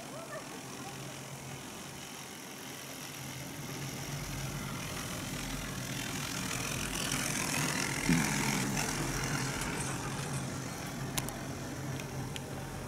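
Chairlift haul rope and chair grip running over a lift tower's sheave wheels: a rumbling rattle over a low steady hum that grows louder toward the middle, peaks about eight seconds in, then eases off, with a couple of sharp clicks near the end.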